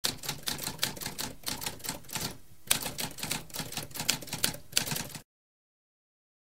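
Typewriter typing: a quick run of key strikes with a brief pause about halfway and a sharp strike right after it, cutting off abruptly a little after five seconds.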